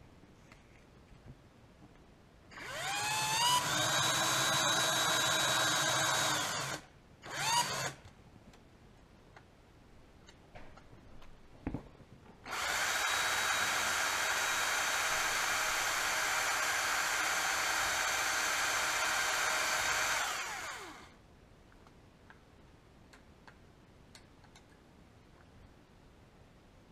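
Cordless drill boring a small hole through a wooden dowel: the motor spins up with a rising whine and runs about four seconds, gives a short burst, then after a pause runs steadily for about eight seconds before winding down.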